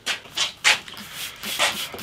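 Hand-held trigger spray bottle squirting water onto a wooden guitar binding strip, several short hissing bursts in quick succession.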